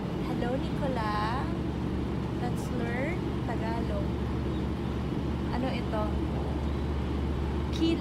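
Steady low rumble of a passenger train running, heard from inside the carriage, with brief faint voices over it.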